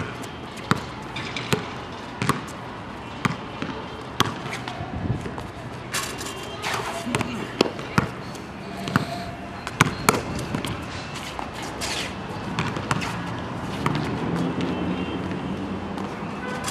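A basketball being dribbled and bounced on a hard outdoor court, a string of sharp thuds about a second apart, coming closer together in the middle.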